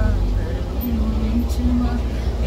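Steady low rumble of a moving bus's engine and road noise heard inside the passenger cabin, with a woman's voice softly holding low sung notes over it.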